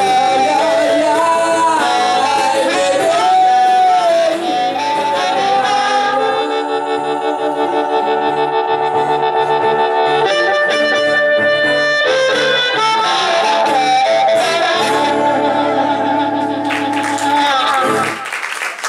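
Blues harmonica played into a cupped handheld microphone, bending notes over a strummed acoustic guitar, then holding a long wavering chord in the middle. Near the end the tune closes and applause starts.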